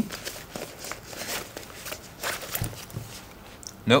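Quiet rustling of nylon fabric and a few light knocks as a stainless steel water bottle is pushed into a small nylon crossbody bag. The bottle does not fit.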